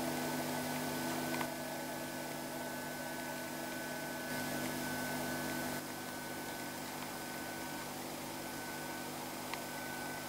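Steady hum and hiss from a running 1950s valve television receiver, a Minerva FS 43, between dialogue of the programme it is playing. There is a faint click about a second and a half in and another near the end.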